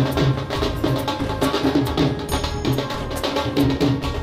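Several dhol drums, two-headed barrel drums, played together in a fast, driving rhythm of dense, evenly repeating strokes.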